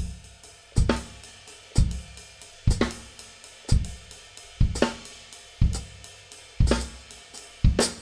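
Gretsch drum kit with Zildjian cymbals, all four limbs striking kick, snare, hi-hat and cymbal together about once a second, eight times. The limbs land slightly apart, so the hits come out loose and flammed instead of as one tight note: the poor 'verticality' being demonstrated.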